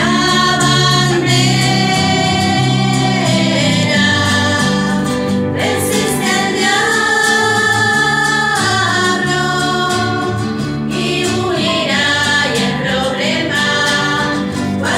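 A small women's choir singing a hymn together to acoustic guitar accompaniment, with several long held notes.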